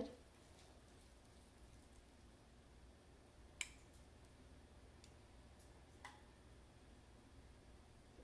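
Near silence, broken by two faint clicks, one about three and a half seconds in and a weaker one about six seconds in: a small spatula touching the mini waffle maker as batter is spread over its grates.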